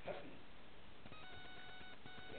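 A steady electronic tone, several pitches held together, starts just over a second in after a brief bit of voice.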